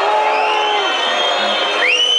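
Club concert crowd cheering and whooping in reaction, with a shrill rising whistle near the end, over the band's quiet background playing.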